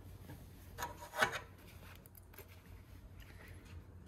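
Denim waistband fabric being handled at the sewing machine, a brief rubbing, scraping rustle about a second in, then faint handling noise.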